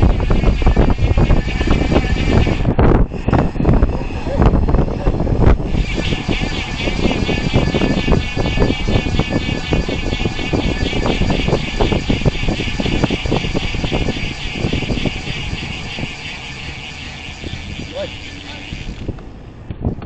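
Wind buffeting the microphone of a camera mounted on a road bike moving at about 30 km/h. Through the middle there is a steady high buzz, typical of the rear hub's freewheel ratchet while the rider coasts. The wind noise eases near the end as the bike slows.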